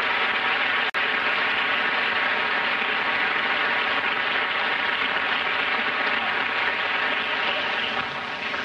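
Large audience applauding steadily, with a momentary dropout in the sound about a second in.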